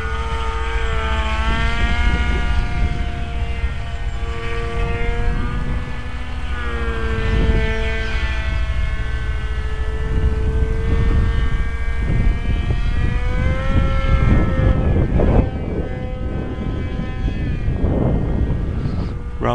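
Electric RC delta plane in flight: its propeller and Overlander Big Bell 1000kv brushless motor make a steady whine overhead, with a pitch that drifts slowly up and down.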